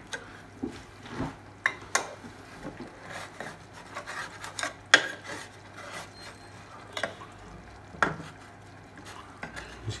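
A knife cutting through a baked pasty's crust, the blade scraping and knocking on the metal baking tray in irregular strokes, the loudest about five seconds in.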